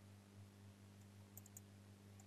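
Near silence with a faint steady hum; about one and a half seconds in, a quick run of three faint clicks from a computer mouse.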